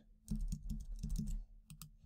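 Computer keyboard keys pressed in a quick run of clicks, then a couple more near the end, as code is copied and pasted.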